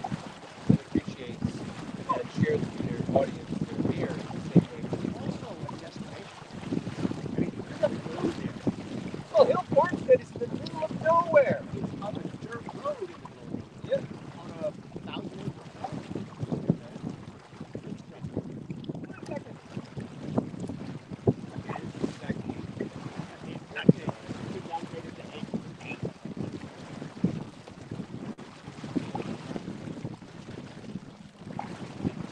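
Wind buffeting the microphone aboard a small sailboat under sail, with water washing past the hull and short knocks. Indistinct talk from the people aboard comes through, strongest about ten seconds in.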